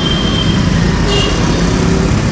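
Steady roadside traffic noise: a continuous low rumble of passing vehicles, with a brief high-pitched tone a little over a second in.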